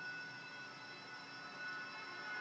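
Quiet room tone: a faint steady hiss with a few thin, unchanging high tones and no other events.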